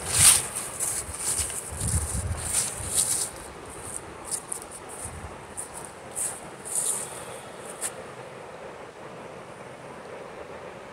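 Footsteps crunching through dry fallen leaves, about one or two steps a second, which stop near the end. A steady rush of background noise sits under them.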